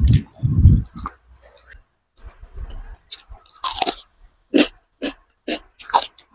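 Close-up chewing of a mouthful of rice and chicken curry eaten by hand: wet, heavy mouth sounds in the first second, then a string of short crisp crunches from about three seconds in.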